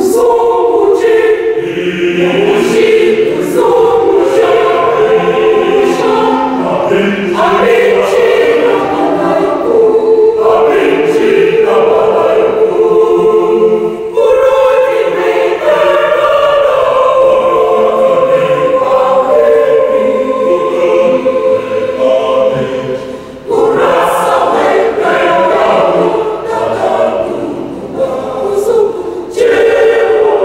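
Mixed church choir singing a communion song in harmony, several sustained parts together; the singing breaks off briefly about three-quarters of the way through and comes straight back in.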